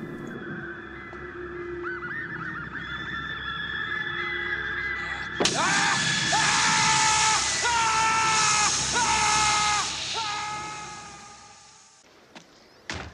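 Horror film score: eerie gliding synthesizer tones, then a sudden loud swell about five seconds in, with hiss and several held shrill tones, fading away near the end.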